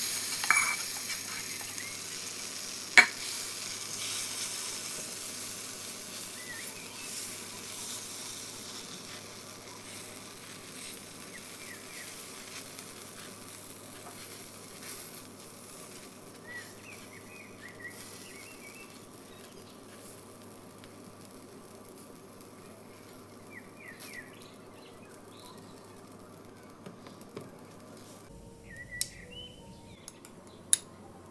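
Mung bean batter sizzling in hot oil in a non-stick frying pan, loudest as it is poured in and slowly dying down, with a sharp tap about three seconds in and light spoon scraping as the batter is spread.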